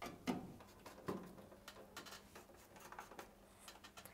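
Faint clicks and light ticking of a hand screwdriver driving Torx screws into an oven's sheet-metal top panel: a few sharper knocks in the first second, then a run of small irregular ticks.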